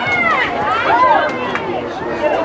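Spectators' voices talking and calling out, several voices overlapping.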